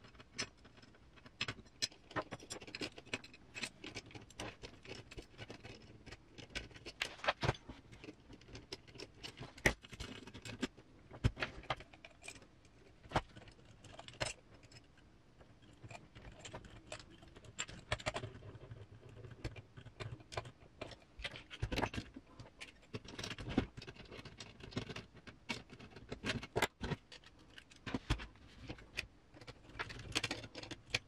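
Irregular light clicks, taps and clatter of small metal screws, nuts and a hand hex driver being handled against a metal RC crawler chassis and bumper during assembly.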